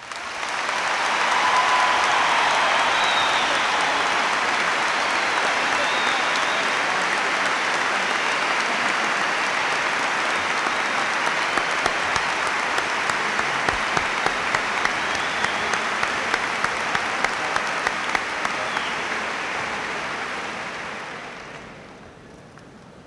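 A large audience applauding, a dense steady clapping that dies away in the last second or so. Through the middle, one close, sharp clapper stands out at about two claps a second.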